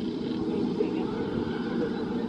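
Jurassic World VelociCoaster train running on its steel track at a distance, a steady low rumble, with faint voices over it.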